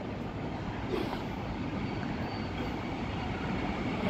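Electric passenger train approaching the platform along the track, its rumble growing steadily louder.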